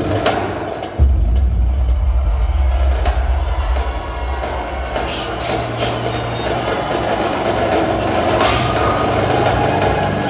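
Indoor drumline and front ensemble performing: a deep, sustained low rumble starts suddenly about a second in and holds, with scattered sharp percussion strikes and a swelling wash of sound toward the end.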